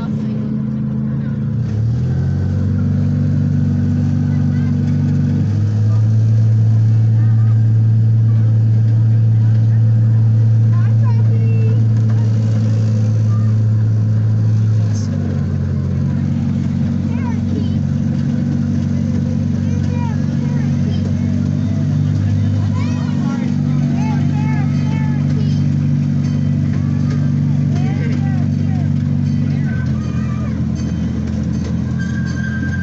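Miniature park train running with a loud, steady low drone. The drone shifts to a lower pitch about six seconds in and moves back up about fifteen seconds in.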